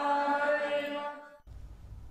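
Voices chanting Hindu mantras on a steady held note, which breaks off about one and a half seconds in, leaving only a faint low hum.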